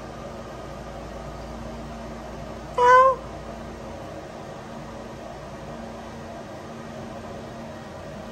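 A cat meows once, a short call rising in pitch, about three seconds in, over the steady hum of the pet drying cage's fans.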